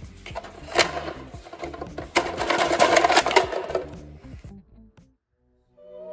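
Hard plastic game blocks knocking and clattering in a clear plastic loader tube as a plastic wedge is forced in under it. There is a quick run of clicks and knocks, thickening into a busy clatter a couple of seconds in. The clatter stops, and music starts near the end.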